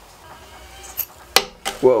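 Two sharp clicks from hands working the fan wiring at a 3D printer's hot end: a small one about a second in, then a louder one just after, over a faint steady hum.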